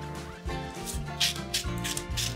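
Background music, with scissors snipping through wax paper: a few short crisp cuts in the second half.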